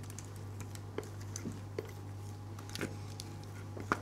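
Thick gingerbread batter being poured from a glass mixing bowl into a metal cake ring: faint, scattered light clicks and taps of the utensil and bowl over a low steady hum.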